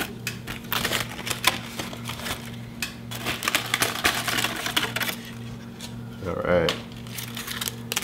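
Aluminium foil crinkling and tearing in quick, irregular crackles as it is peeled by hand off a pomegranate air layer, busiest in the first five seconds.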